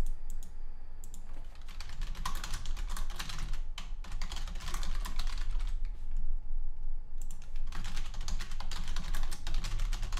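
Typing on a computer keyboard: quick runs of keystrokes broken by short pauses, with a longer pause about six seconds in before the typing resumes.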